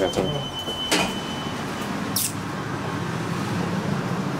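Lift machinery humming steadily, with a high steady beep tone over the first two seconds and a sharp click about a second in.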